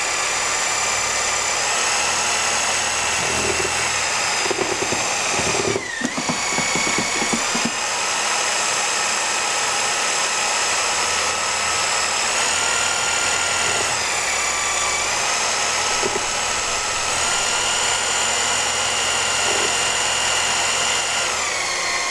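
A variable-speed hammer drill spins a mixing impeller through thick clay slip in a plastic bucket, blunging it smooth. Its motor whine is steady, dips briefly about six seconds in, then steps up and down in speed a few times before winding down at the end.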